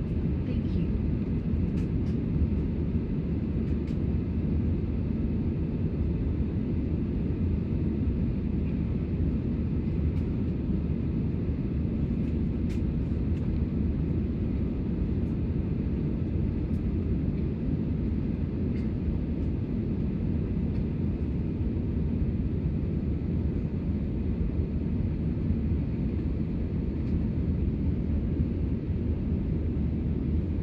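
Steady low drone of an Airbus A320's engines and airflow heard from inside the passenger cabin, with a few faint clicks.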